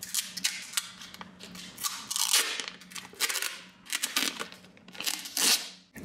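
Thin protective plastic film crinkling and crackling as it is handled and peeled off a small plastic USB-to-Ethernet adapter, a run of sharp, irregular crackles.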